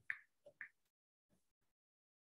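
A few faint, short clicks in near silence, the two loudest just after the start and about half a second later.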